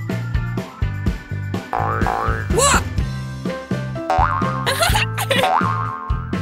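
Bouncy children's cartoon background music with springy, boing-like sliding sound effects that rise and fall in pitch, about two and a half seconds in and again near five seconds.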